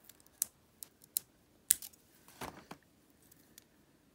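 Small sharp clicks and taps of fingernails and fingers pressing plastic gem stickers onto a wooden lolly stick: about five separate clicks in the first two seconds, then a duller handling knock about two and a half seconds in, and faint ticks after.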